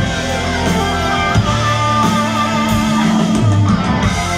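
Live rock band playing an instrumental passage: electric guitars and drums, loud and sustained, with a high held note wavering quickly through the middle.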